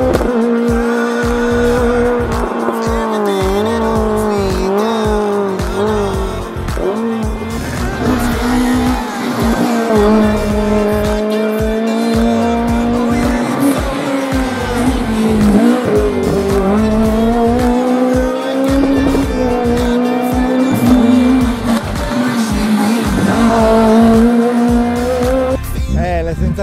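Peugeot 106 rally car's four-cylinder engine held at high revs through the corners, its pitch wavering and dipping a few times, with tyres squealing, over background music.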